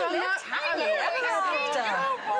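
Several women's voices talking over one another, with some laughter mixed in.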